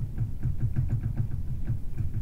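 Chalk stroked quickly back and forth on paper laid on a table, a steady run of soft knocking strokes, about five or six a second.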